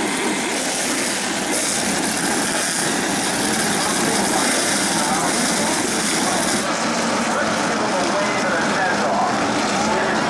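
A pack of Tour-type modified race cars with V8 engines running together at pace speed, a steady dense engine noise that grows brighter from about a second and a half to about seven seconds in.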